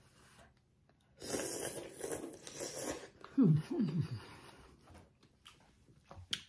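A person slurping soft rice noodles from hot soup for about two seconds, then two short falling hums of enjoyment.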